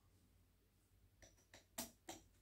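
Near silence with a few faint small clicks, the clearest one near the end: metal parts of a knife clamp being handled and tightened as a knife is fitted into it.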